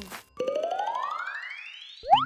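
Cartoon sound effect: a whistle-like tone with a fast flutter that slides steadily upward for about a second and a half, starting about half a second in and fading as it climbs.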